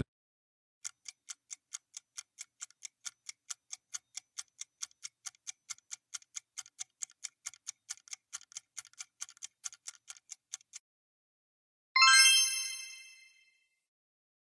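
Quiz countdown-timer sound effect: a fast, even clock ticking, about five ticks a second, for about ten seconds, then it stops. About a second later a bright chime rings once and fades, marking the reveal of the correct answer.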